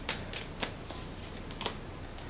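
A deck of tarot cards being handled and shuffled in the hands, giving a few short, light card clicks.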